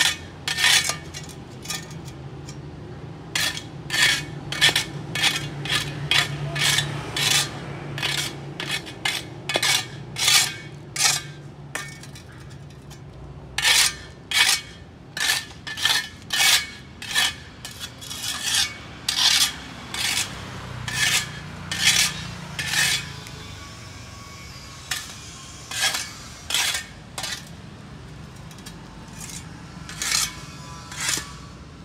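Metal shovel blade scraping across a paved sidewalk, pushing up dry leaves and dirt in short, sharp strokes about one or two a second, in runs broken by brief pauses.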